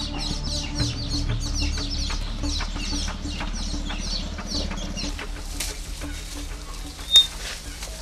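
Chickens clucking in quick repeated calls, about three a second, thinning out after about five seconds, over a low steady hum that stops at about the same time. A single sharp click about seven seconds in is the loudest sound.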